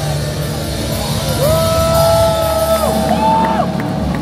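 Punk rock band playing live through a loud PA, heard from within the crowd. Long held notes ring out over the band about a second and a half in.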